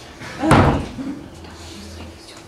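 A door being shut with a bang about half a second in: one loud, sudden knock that dies away quickly.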